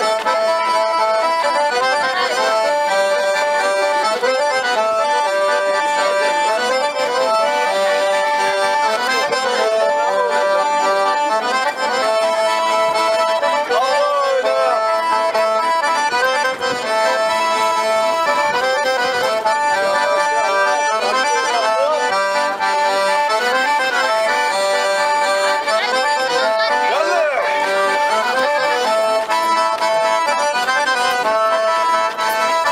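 Traditional music played on accordion, a steady run of held chords under a moving melody, with a few gliding notes.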